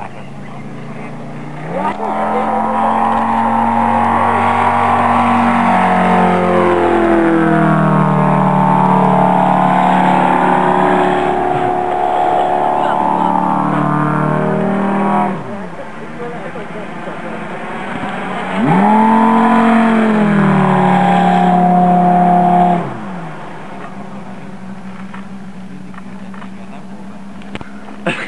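Radio-controlled model airplane's engine making low passes overhead, its pitch sweeping up and down as the plane goes by. It is loud from about two seconds in to about fifteen seconds, drops to a fainter run, then a second loud pass comes from about eighteen to twenty-three seconds.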